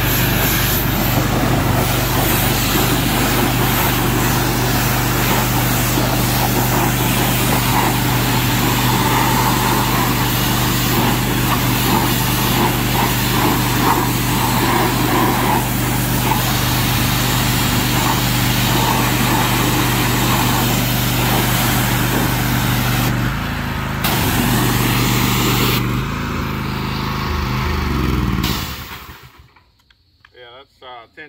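Gas-engine pressure washer running steadily under the hiss of the high-pressure spray on the mower deck. The engine note shifts in the last few seconds, then the sound dies away near the end.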